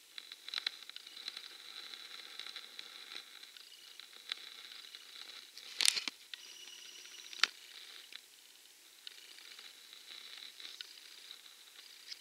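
Faint clicks and rustles of a handheld camera being handled, over a faint steady high whine, with two sharper clicks about six and seven and a half seconds in.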